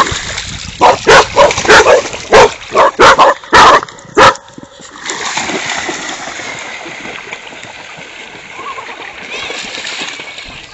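A dog barking in a rapid run of about ten loud, sharp barks during the first four seconds, then steady splashing of water as dogs wade through shallow water.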